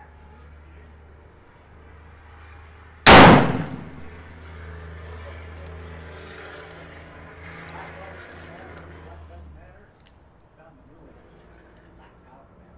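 A single shot from an 1847 Colt Walker .44 black-powder revolver, loaded with 40 grains of powder and a pure-lead conical bullet, about three seconds in: a sharp report with a ringing tail under a second long. A few light clicks follow later.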